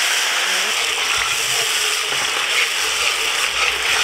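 Steady sizzling as ketchup and green seasoning hit hot browning, brown sugar caramelized in oil, in a large aluminium pot.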